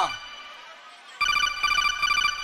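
A fast, trilling electronic phone ringtone played as part of the track. It breaks off at the start, leaves about a second of quieter gap, then rings again.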